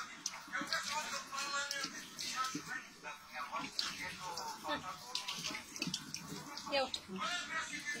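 Indistinct background talk over tap water running into a small metal strainer in a sink.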